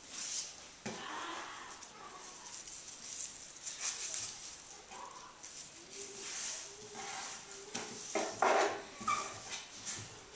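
Cloth strips rustling and sliding as they are folded and pulled through onto a taut string, with a short louder sound about eight seconds in.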